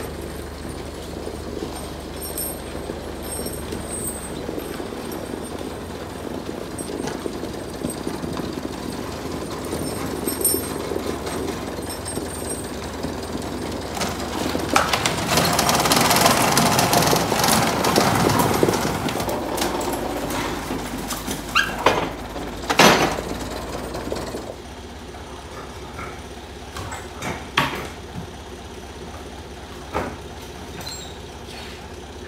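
Loader engine running steadily, growing louder in the middle as the machine comes close, with several sharp knocks a little after the midpoint, then dropping to a quieter steady run with a few lighter knocks near the end.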